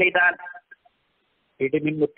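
A man speaking, breaking off for about a second of silence, then starting again.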